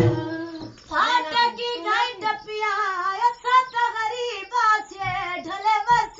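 A high female voice singing a wavering, ornamented melody with no drums behind it.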